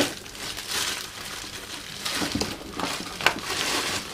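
Papers being handled and rummaged through, crinkling and rustling in irregular spurts in a small room.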